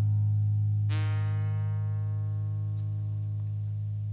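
Acoustic guitar ringing out: a chord is plucked about a second in and left to fade slowly, the closing notes of a song.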